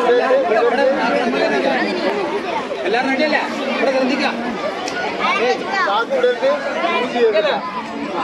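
A group of children chattering and calling out at once, many overlapping voices with no single one standing out.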